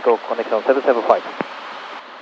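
Speech for about the first second, then a steady hiss.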